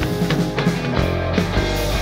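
A live band playing an instrumental passage of a rock song: guitar over drums, with regular drum strikes.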